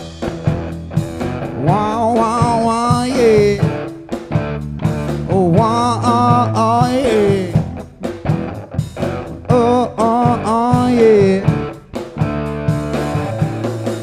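Live rock band playing, with electric guitar, bass and drums under a male voice singing three long, gliding phrases.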